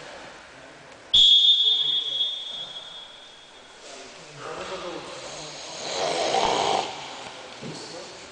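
A loud, single high-pitched signal tone cuts in suddenly about a second in and fades out over the next two and a half seconds, marking a stop in the wrestling bout. Voices follow later on.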